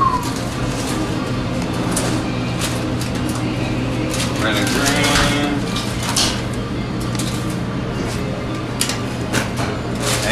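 Busy restaurant kitchen: a steady hum of kitchen equipment with scattered clatter and handling knocks and faint voices in the background, and a short falling squeak right at the start.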